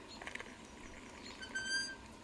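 A few faint clinks of a glass tea cup and a samovar's metal tap, then a short, high, squeak-like whistle about one and a half seconds in.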